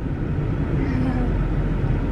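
Steady road and engine noise inside a moving car's cabin.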